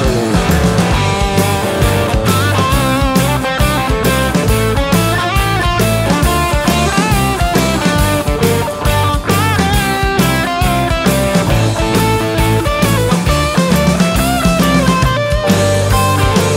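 Instrumental break in a rock song: an electric guitar plays a lead line with bent, wavering notes over a drum kit, bass and rhythm guitar.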